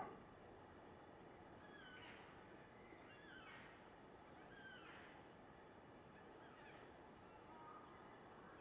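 Near silence with faint bird calls: a short, curving call repeated about every second and a half.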